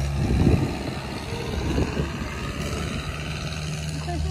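An engine running steadily with a low hum, with a few low knocks in the first second.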